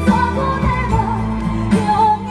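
A woman singing a Taiwanese pop song live into a handheld microphone over a pop backing track.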